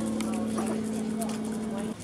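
Bantam chickens pecking at worms on concrete, light taps with faint clucking, over a steady low hum that cuts off suddenly just before the end.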